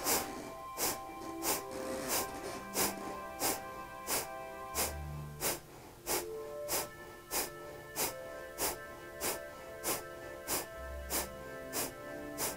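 Kapalabhati breathing: sharp, forceful exhales through the nose in a steady rhythm, about three every two seconds. Soft background music with sustained notes plays underneath.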